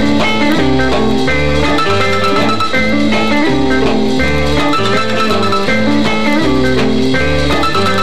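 A band recording playing an instrumental passage, with guitar to the fore over a steady bass line changing note in an even rhythm.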